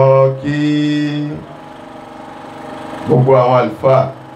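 A man chanting through a microphone and loudspeakers in long, held sung notes. There is a pause of about two seconds in the middle before he sings again.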